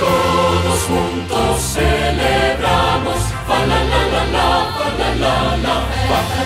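A choir singing a festive Christmas song over a steady instrumental accompaniment with a sustained bass line.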